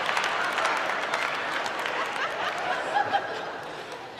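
Theatre audience laughing and applauding, dying down gradually.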